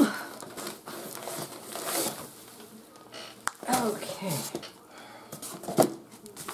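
Rustling and crinkling of paper and cardboard as a paper bag is lifted out of a cardboard shipping box and printed sheets are handled, with a few irregular sharp rustles. Short bits of murmured speech come in about four seconds in and again near the end.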